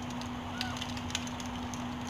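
Quiet, steady background hum of room tone, with a few faint ticks.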